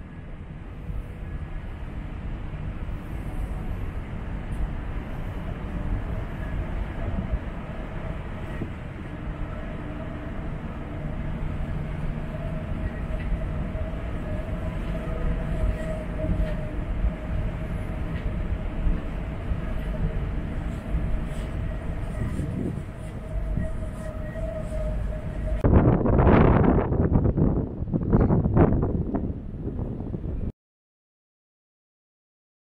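Steady roar of wind over a ferry's open upper deck, with a constant mechanical hum running under it. About 26 seconds in, strong gusts buffet the microphone.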